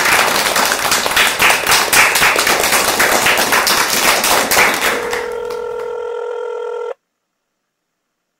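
A telephone bell ringing with a rapid clatter, followed about five seconds in by a steady telephone tone that lasts about two seconds and cuts off suddenly.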